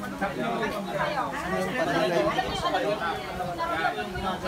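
Several people talking at once: the overlapping, indistinct chatter of a group.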